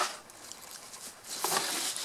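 Fingers scratching and rustling through loose potting soil, with a sharp scrape right at the start and a louder stretch of scraping near the end.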